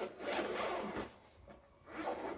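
Zipper of a black padded fabric case being pulled open with a long rasping pull in the first second. A second, shorter pull starts near the end.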